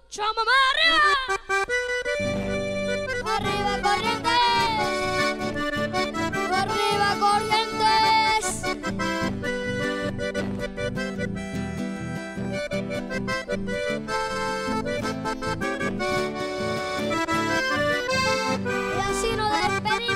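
Chamamé played on a red Hohner button accordion with classical guitar accompaniment over a steady rhythmic bass. The full band comes in about two seconds in.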